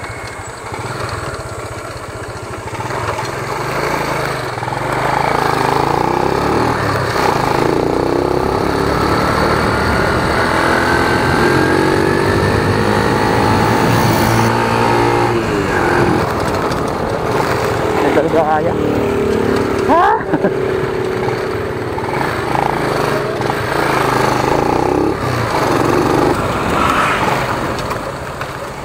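Motorcycle engines revving and easing off as the bikes lean through a bend, the pitch climbing in a long rise as they accelerate. A short sharp crack comes about two-thirds of the way through.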